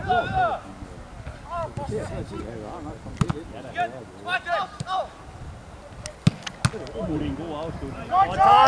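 Footballers shouting short calls to each other across the pitch, with a few sharp thuds of a football being kicked, two of them close together about six seconds in.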